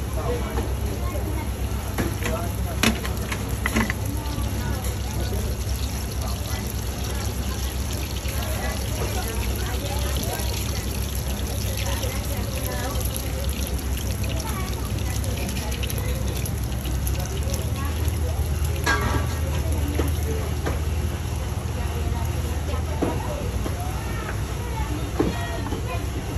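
Open-air market background: indistinct voices of people around the stall over a steady low rumble, with a couple of sharp clicks a few seconds in and a short clattering rattle about three-quarters of the way through.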